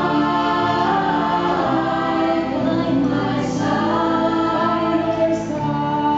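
Two women singing a slow duet into handheld microphones, holding long notes, over a small live band of acoustic guitar and keyboard.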